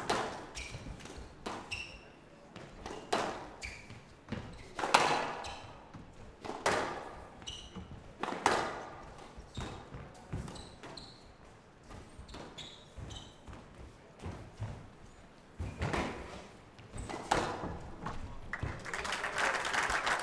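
Squash rally on a glass court: the ball is struck by rackets and hits the front wall and glass walls in sharp, echoing knocks every second or two, with short high squeaks between them. Applause starts near the end as the rally finishes.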